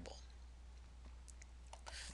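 Near silence with a low steady hum, broken by a few faint clicks of a computer mouse about one and a half seconds in, as the text cursor is placed in the code.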